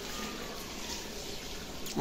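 Chicken curry cooking in an aluminium kadai over a gas burner, a steady hiss with no break.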